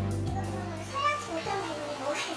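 Background music holding a steady low chord that stops about a second and a half in, under faint background voices.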